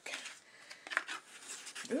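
A small cosmetic's packaging being opened by hand and the lip crayon tube taken out: a few light clicks and rustles.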